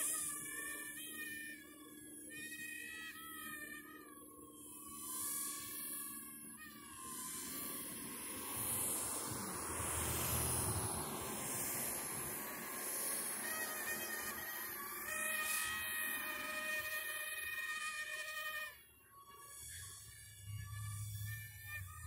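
Small toy quadcopter's motors and propellers whining, the pitch wavering up and down as the throttle changes, then holding steadier later on. A broad rushing noise swells up and fades in the middle, around ten seconds in.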